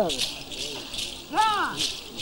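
Dancers' rattles shaken in a steady beat, about two to three strokes a second, with a drawn-out call from a voice that rises and falls about one and a half seconds in.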